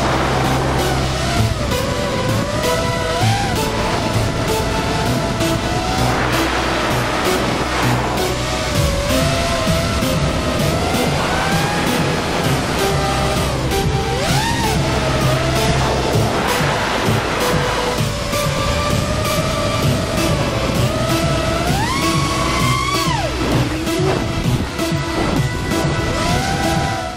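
Background music, with an FPV racing quadcopter's motors whining over it, their pitch rising and falling constantly with throttle. The whine climbs sharply and holds high a few seconds before the end.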